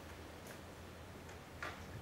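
Clicks from a laptop being worked during a software demo: a faint one about half a second in and a sharper one about one and a half seconds in, over a low steady room hum.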